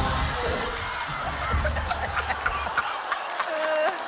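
People laughing and chuckling in short bursts, with a short voiced laugh near the end, just as the music stops.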